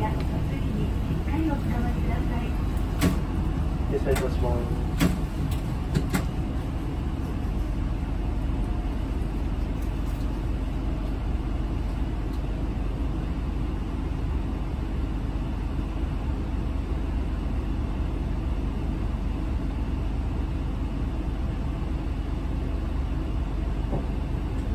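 Steady low engine and road rumble heard inside a city bus cabin as it moves slowly in heavy traffic. A few sharp clicks come in the first few seconds.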